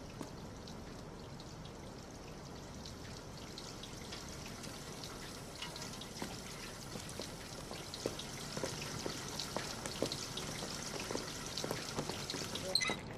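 Water running from several outdoor taps and splashing into a concrete trough, left running to chill a watermelon; it grows gradually louder and more splashy.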